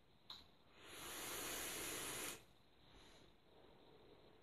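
A click, then a long vape draw on an Oumier VLS RDA firing at 40 watts: air hissing through the atomizer's airflow as the coil vaporizes the juice, for about a second and a half, cutting off sharply. A fainter hiss of exhaled vapor follows.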